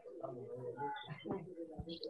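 Quiet, indistinct talking over a video-call connection.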